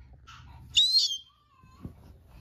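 A short, high-pitched squeal with a wavering pitch about a second in, followed by a faint soft thump near the end.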